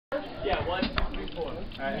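A person talking, with a couple of short knocks about half a second and a second in.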